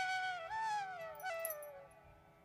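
Background flute music: a single slow melodic line with sliding, gliding notes, fading away near the end.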